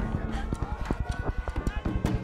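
Hard-soled footsteps running on wooden boardwalk planks, a quick run of sharp knocks, with tense film-score music underneath.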